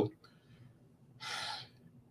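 A man's in-breath through the mouth between phrases, a single short rush of breath lasting about half a second, past the middle.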